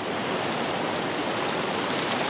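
A steady rushing noise, even and unbroken, with no pitch or rhythm.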